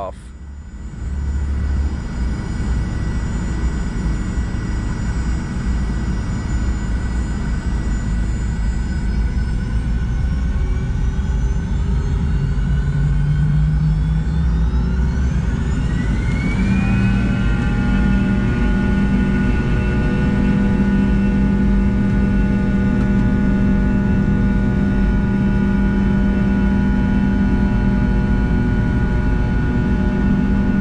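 Fokker 70's rear-mounted Rolls-Royce Tay 620 turbofans, heard from the cabin, spooling up for takeoff. A whine of several tones rises over a few seconds about halfway through, then holds loud and steady over a low rumble as takeoff thrust is set and the jet begins its takeoff roll.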